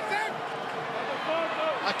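Large stadium crowd at a rugby match: a steady din of many voices, with faint wavering calls or singing rising out of it.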